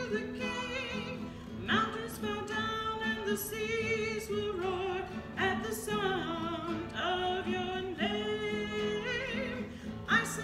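Contemporary worship song: a singer holding long notes with vibrato over sustained instrumental accompaniment.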